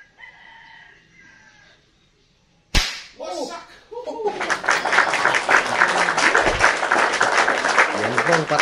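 A single sharp airgun shot cracks about two and a half seconds in, knocking over a matchstick target, after a faint rooster crow. A brief exclamation follows, then from about four seconds a loud, dense stretch of added sound runs on.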